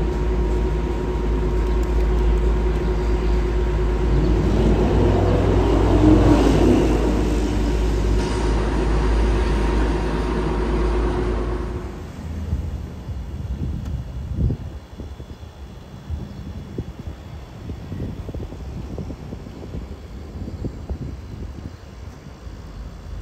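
City street traffic: a steady engine rumble with a constant hum, and a vehicle passing about five seconds in. About halfway through, the sound cuts to the fainter low rumble of distant helicopters, with scattered soft thuds.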